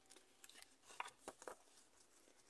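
Near silence with a few faint rustles and clicks of a folded paper poster being handled.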